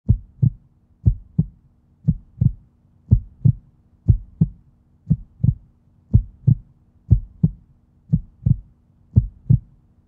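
Heartbeat sound effect: a low double thump, lub-dub, repeating about once a second over a faint steady hum.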